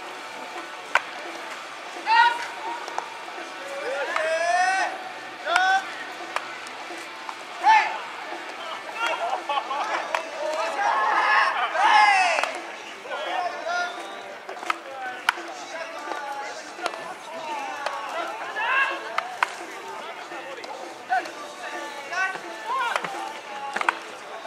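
Drawn-out shouted calls and encouragement from players in a baseball fielding drill, punctuated several times by sharp knocks of a bat hitting ground balls.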